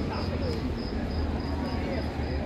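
An insect chirping, a steady high-pitched pulse repeating about four to five times a second, over the murmur of crowd voices.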